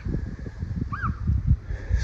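Wind buffeting the microphone in uneven gusts, with a single short bird chirp that rises and falls about a second in.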